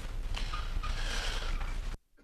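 Meeting-room background noise: an even hiss and low hum with faint rustling and knocks, no clear speech. It cuts off suddenly at the end as the feed is switched off.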